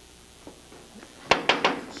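Four quick, sharp knocks, about six a second, starting just over a second in, the first reaching lowest.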